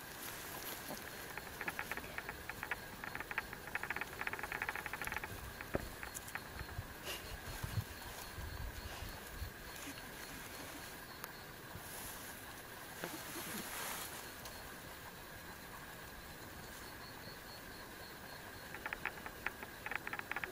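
Soft rustling of a cloth bag and dry grass as a northern quoll is let out onto the ground, with a few low handling knocks in the middle. A steady thin insect trill runs underneath throughout.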